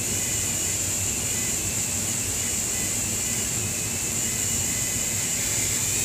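Dremel rotary tool running at slow speed (setting six or seven) with a very fine-grit rubberised abrasive point, polishing carbon buildup off a motorcycle cylinder head's combustion chamber. It makes a steady high whine whose pitch wavers slightly.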